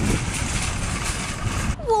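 Steady outdoor parking-lot noise, a low rumble with a hiss over it, that cuts off suddenly near the end.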